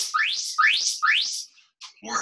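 Four quick rising chirps, each a clean pitch sweeping sharply upward, coming about 0.4 s apart and stopping about one and a half seconds in.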